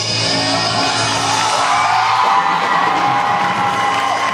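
Rock band of electric guitar, electric bass and drum kit holding a sustained final chord, with the audience starting to whoop and cheer about halfway through.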